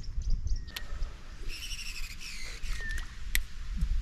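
A bird calls once, a short high call of under a second about a second and a half in, over a low steady rumble. Two sharp clicks fall about a second in and near the end.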